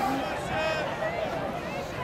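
Speech only: scattered voices of people talking among a gathered crowd.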